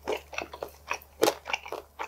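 Close-miked chewing of a mouthful of oven-roasted chicken wing: a string of short, irregular mouth clicks and crunches, the loudest a little past halfway.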